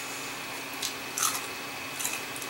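Two short crisp crunches in quick succession, near the middle, of someone biting and chewing a piece of raw Sweet Heat pepper.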